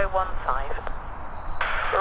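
Air traffic control voice over an airband radio, thin and cut off in the treble, with a short pause of hiss just past the middle before the voice comes back. A faint low rumble sits underneath.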